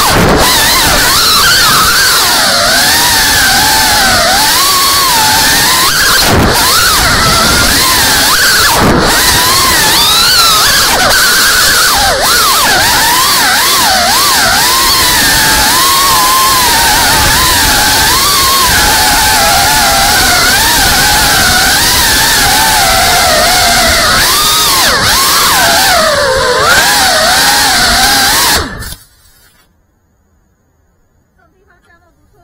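FPV quadcopter's motors whining, the pitch rising and falling constantly with the throttle, over a steady rush of wind and prop wash. The sound cuts off suddenly near the end as the drone comes down in the grass and the motors stop.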